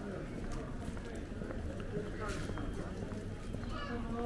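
Footsteps on hard paving slabs, a run of short clicks from walking, with voices of passersby in the background.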